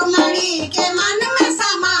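Two women singing a Garhwali Vishnu bhajan together, accompanied by hand strokes on a dholak.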